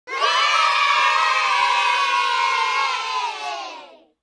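A group of children cheering and shouting together in one long held yell that tails off near the end.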